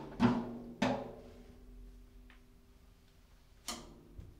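Sparse, free-improvised drum kit playing: a few separate struck hits that ring out and die away, two close together in the first second, a faint one past the middle and another sharp hit near the end.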